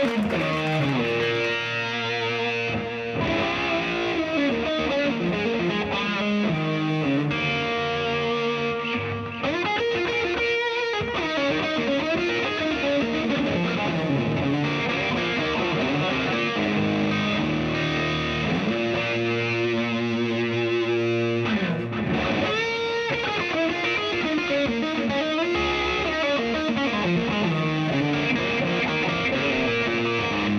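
A live blues-rock band playing a slow blues, led by an overdriven electric guitar solo full of bent notes, over bass guitar and drums.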